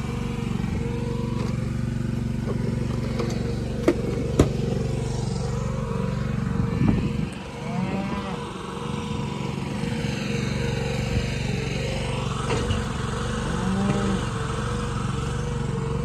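An engine running at a steady idle, with two sharp metallic clanks about four seconds in.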